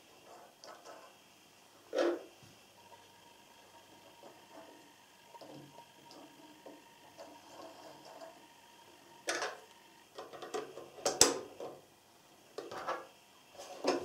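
Small clicks and knocks of parts being handled at the drop-in bobbin area of a Janome computerized sewing machine. There is one click about two seconds in, then a run of sharper clicks and taps over the last five seconds as the bobbin area is closed up.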